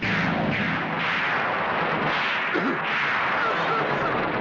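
Film explosion sound effect: a sudden loud blast that carries on as a steady rushing noise while the scene fills with smoke.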